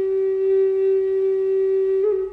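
A flute holding one long, steady note with faint overtones, wavering and breaking off at the very end.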